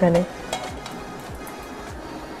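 Cooking oil heating in a non-stick kadai with a faint, steady sizzle, under quiet background music with a steady beat.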